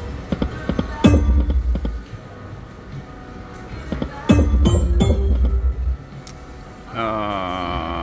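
Dragon Unleashed poker machine game sounds over its own background music. Two deep booming hits with a falling tone come about a second in and again a little past the middle, as reels stop and fireball bonus symbols land, with a few sharp clicks after the second. A warbling chime jingle follows near the end.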